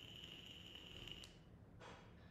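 Near silence with a faint, high, steady tone that stops about a second and a half in, followed by a short breath near the end.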